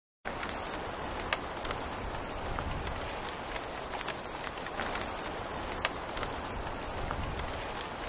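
Rain falling steadily, with a few sharper drop ticks standing out; it cuts in abruptly from silence right at the start.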